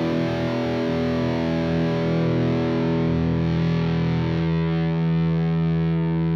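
Electric guitar chord through the Line 6 Guitar Amp's high-gain Treadplate Dual model, distorted and held, sustaining and ringing out with no new strum. Some of its upper tones fade about four and a half seconds in.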